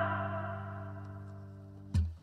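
The last held chord of a guitar-led pop song, with a sustained bass note under it, ringing out and fading away. Near the end comes one short, sharp hit, with a brief noisy tail after it.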